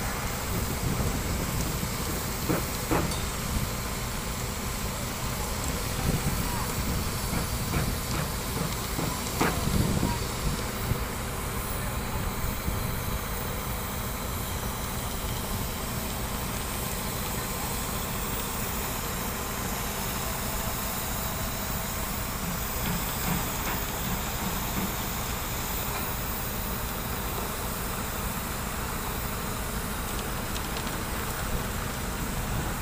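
Concrete transit mixer truck running steadily, its drum turning as it discharges concrete down the chute, with a few sharp knocks in the first ten seconds.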